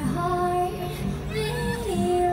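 A woman singing long wordless held notes with acoustic guitar accompaniment. Her pitch steps up about one and a half seconds in and drops back near the end.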